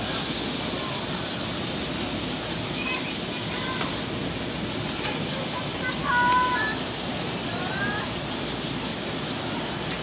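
Open-air sports-ground ambience: a steady rush of background noise with faint distant voices calling out now and then, the clearest a little after six seconds in.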